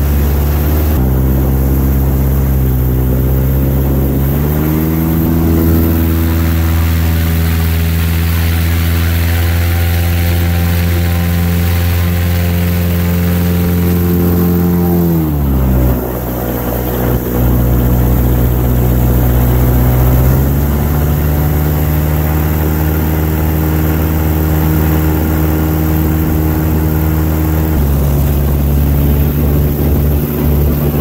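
Airboat engine and air propeller running under way. The engine speed steps up about a second in and again around five seconds in, holds steady, drops back about halfway through, rises again about two-thirds of the way in, and eases off near the end.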